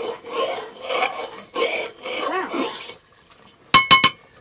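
A metal ladle scraping and stirring round the inside of a metal cooking pot in rhythmic rasping strokes, about two a second, which stop about three seconds in. Near the end come two sharp, ringing metallic clanks as the steel lid and ladle knock against the pot.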